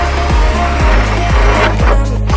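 Background music with a steady kick-drum beat about twice a second. Under it a cordless drill runs with a hole saw, cutting an entry hole in the bottom of a plastic meter cupboard.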